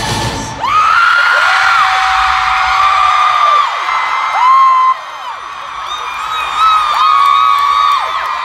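A concert crowd of fans screaming and cheering as the band's music stops about half a second in. Several long, high screams rise, hold and fall away, overlapping one another close to the microphone.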